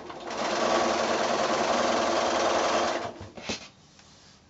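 Electric sewing machine stitching a patchwork seam at a steady speed for about three seconds, then stopping, followed by two short clicks.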